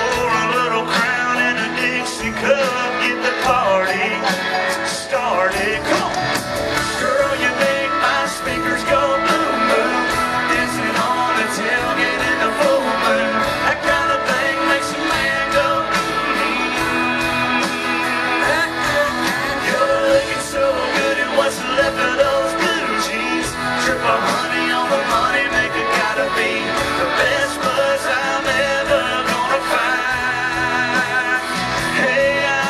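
Live country band playing with a male lead vocal and guitars, amplified through the venue's sound system and recorded from among the crowd at a steady, loud level.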